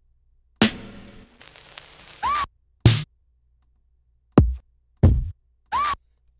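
Native Instruments Maschine drum samples from one multi-sampled pad, triggered key by key from the keyboard: six separate hits, each a different drum sound. A long noisy hit about half a second in rings on for over a second, then come deep kick hits whose pitch drops and two short hits with a quick arching whine.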